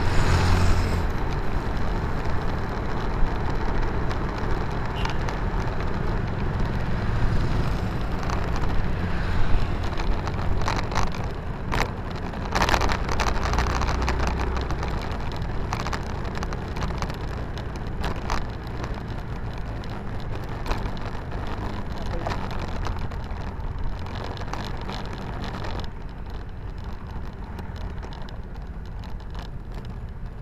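Wind and road noise from riding through street traffic, with scattered knocks and clicks. It grows quieter as the ride slows and stops.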